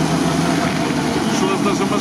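UAZ off-road vehicle's engine idling steadily, with voices talking over it.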